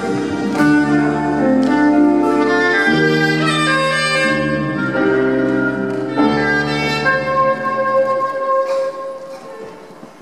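Soprano saxophone playing a slow melody over live band backing with bass. About seven seconds in, the backing drops away and the saxophone holds one long note that fades out.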